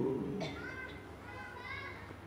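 A man's long chanted note ends right at the start and dies away in the hall's echo. Faint, high children's voices follow in the quiet.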